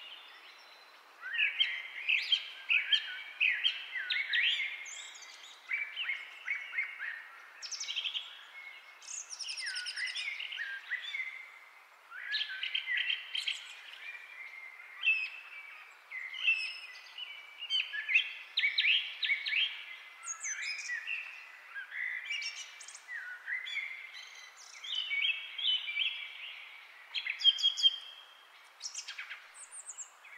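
Songbirds singing: a run of quick chirps and trills, phrase after phrase, over a faint steady hiss.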